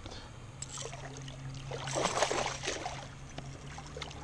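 A hooked bass thrashing and splashing at the water's surface beside a kayak, the splashing strongest about two seconds in. Underneath runs the steady low hum of an electric trolling motor on low speed.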